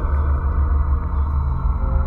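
A deep, steady rumbling drone with a few held tones from an ambient music bed. A higher held tone comes in near the end.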